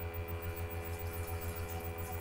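Steady low electrical mains hum with a ladder of fainter higher tones above it. No other distinct sound.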